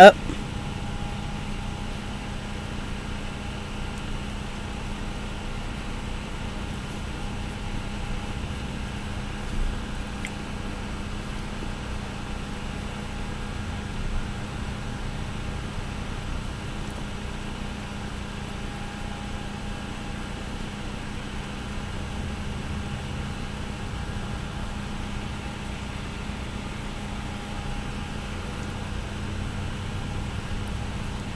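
Steady background hum with a faint constant tone, and two soft taps about ten and fourteen seconds in.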